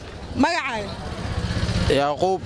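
A small vehicle engine running with a low hum, growing louder through the second half.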